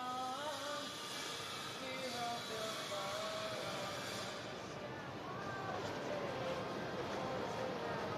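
Faint voices with snatches of singing over a steady rushing hiss, the hiss strongest in the first few seconds.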